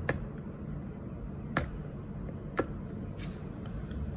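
Wooden orange stick tapping against a polished fingernail, making three light, sharp clicks spread over about three seconds while the nail polish is tested for dryness, over a low steady room hum.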